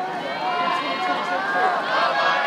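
Spectators shouting and cheering on the relay runners: many raised voices calling out over one another, steady throughout.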